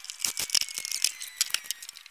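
Cordless drill/driver driving 2-inch screws into a wooden 2x3 support, heard as a quick, irregular run of sharp clicks over a faint motor whine.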